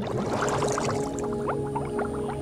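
Cartoon bubble scene-transition sound effect: watery bubbling with many short rising blips over a held musical chord.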